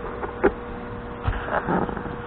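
Handling noise from a camera being moved into position: a sharp knock about half a second in, then a softer bump and a brief rustle, over a steady hum.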